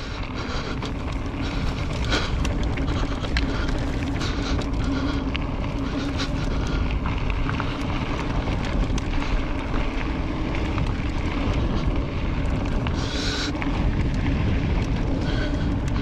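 Wind buffeting the camera microphone while an electric mountain bike rolls along a dry dirt singletrack, with a steady hum under it and frequent sharp clicks and rattles from the tyres and bike over the rough trail.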